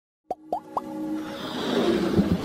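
Intro sting sound effects: three quick rising plops about a quarter second apart, then a swelling whoosh with a held tone that builds louder toward the end.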